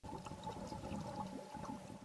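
Underwater ambience from diving footage: a steady wash of water noise with a faint, steady high hum.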